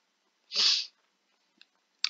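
A single short, sharp burst of breath noise from a person close to the microphone, about half a second in.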